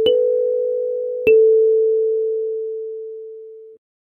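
Two kalimba notes, B4 then A4 about 1.3 seconds later. Each is a sharp pluck of a metal tine followed by a clear ringing tone. The second note fades slowly and stops abruptly near the end.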